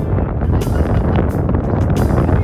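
Wind buffeting the microphone, a loud low rumble with irregular gusty thumps, with music faintly underneath.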